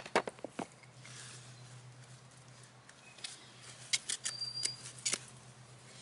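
Knocks of a phone being set down on a concrete path, then faint scattered clicks and rustles of someone working at a plastic-covered hoop house, with one short high tone about four seconds in.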